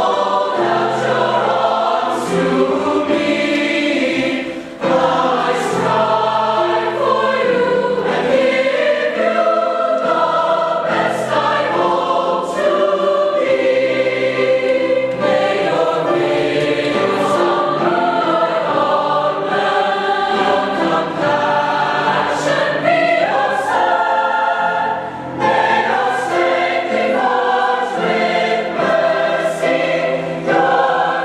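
Large combined mixed choir singing in full voice, with short breaks between phrases about five seconds in and again near the end.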